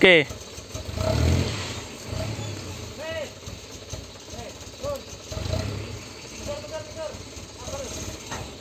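Dump truck engine running with its tipper bed raised while unloading a load of oil-palm fibre, the low rumble rising twice: about a second in and again past the middle.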